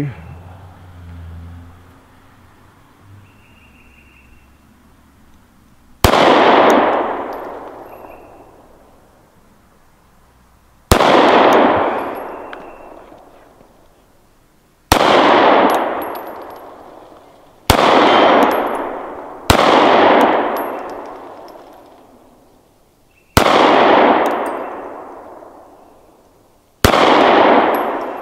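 Seven single shots from a Springfield EMP, a compact 1911 pistol in 9mm, fired slowly a few seconds apart, each followed by a long fading echo.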